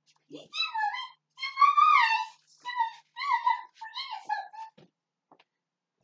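A domestic cat meowing repeatedly: a string of about five high meows in quick succession, each rising and then falling in pitch.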